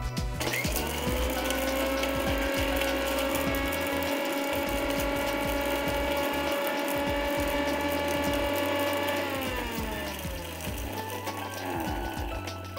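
Electric mixer grinder motor spinning up, then running steadily for about eight seconds as it grinds cardamom, cloves and cinnamon with sugar to a powder in a small dry-grinding jar. It then winds down with a falling whine.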